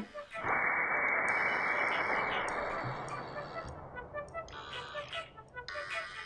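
Slowed-down rushing whoosh of alcohol vapour igniting and burning inside a glass mason jar, deep and muffled. It starts about half a second in and fades over the next few seconds as the flame uses up the oxygen in the jar and goes out. Background music plays over it.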